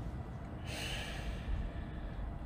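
A speaker's breath into a close microphone during a pause, a soft airy intake lasting under a second, over faint room hum.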